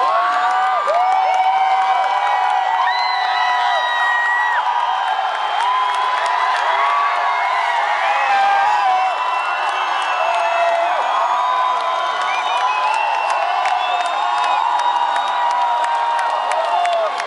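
Large concert crowd cheering and screaming while waiting for the band, many high voices whooping over one another, with scattered claps and whistles.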